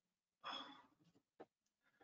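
A person's short, breathy exhale into the microphone about half a second in, then a faint tick; otherwise near silence.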